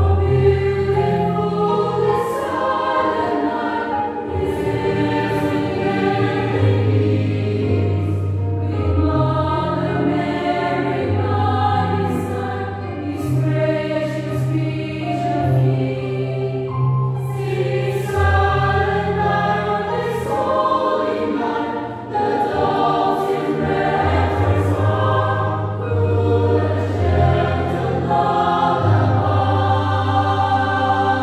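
Mixed choir of men's and women's voices singing a Christmas song in harmony, with held low bass notes underneath and crisp sung consonants.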